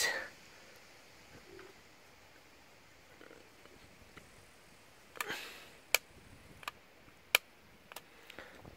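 Light switch being flipped: three short, sharp clicks about two-thirds of a second apart, after a soft rustle, against a quiet background.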